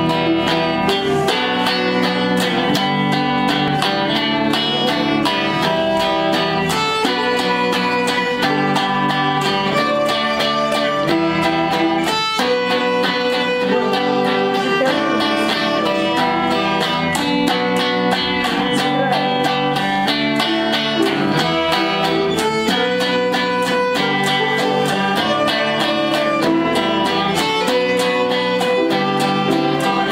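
Electric guitar and violin playing a tune together as a duet, at a steady level throughout.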